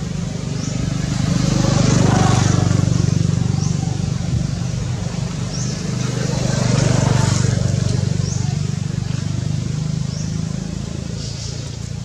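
Motor vehicles passing, two of them, each swelling and fading, about two and seven seconds in, over a steady low engine hum. Short high chirps recur faintly over it.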